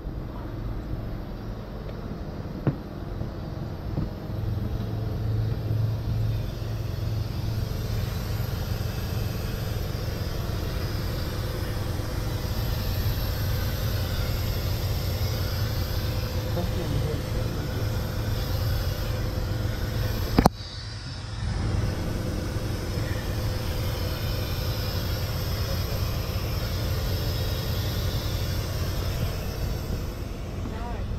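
Heavy rotator tow truck's diesel engine running steadily with its hydraulics working, a constant low rumble. A single sharp click about twenty seconds in, after which the rumble dips for a moment.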